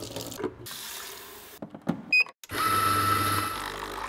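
Water running from a kitchen tap into a sink, then a few clicks and a short high beep. After that, a coffee machine runs steadily with a low hum and a thin whine as it dispenses coffee.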